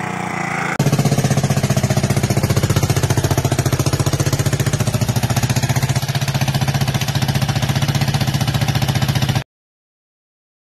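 Honda ATC 200E's single-cylinder four-stroke engine running loud and close, with a fast, even pulsing of about nine beats a second. It cuts in abruptly about a second in and stops suddenly near the end.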